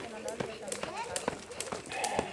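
Jump rope slapping the gravel ground as feet land with each skip, a steady rhythm of sharp ticks about three a second. Indistinct voices chatter in the background.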